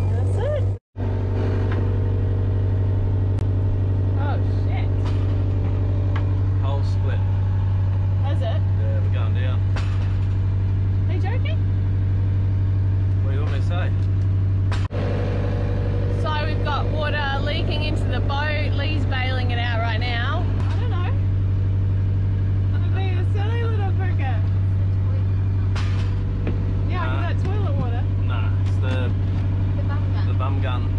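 A boat's inboard engine running steadily under way, a constant low drone that carries below deck, with voices over it at times.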